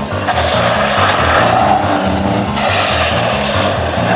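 A motorkhana special car being driven hard, its engine and tyres making a loud rush of noise that starts just after the beginning as it slides through a turn, over orchestral background music.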